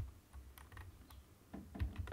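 A few faint, sharp clicks from computer controls, one right at the start and one near the end, over a low steady hum.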